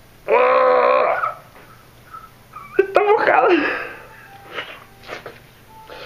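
A man making two drawn-out, strained groans of effort while trying to split an apple apart with his bare hands, followed by a few faint short sounds.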